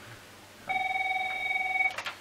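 Telephone ringing: a single steady ring lasting just over a second, starting about two-thirds of a second in.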